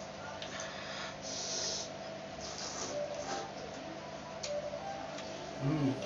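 Close-miked eating of instant noodles: short bursts of slurping and wet chewing, with a light tap of cutlery on the ceramic bowl. A short low voice sound comes near the end.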